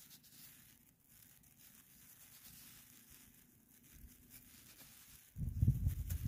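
Faint scrapes and rustles of fingers and a blade of grass cleaning soil off a freshly dug flat button, with a louder low rustle of handling noise starting about five seconds in.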